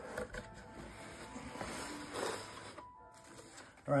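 Cardboard box lid being lifted open and the contents handled: faint rustling and scraping of cardboard and paper.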